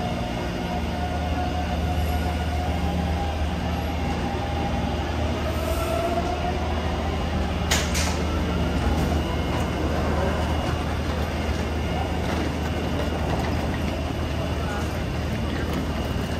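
Taipei Metro Bannan line train pulling in alongside the platform and slowing to a stop, its motor whine sliding in pitch over a steady low hum, with a short sharp hiss about eight seconds in. Crowd chatter runs underneath.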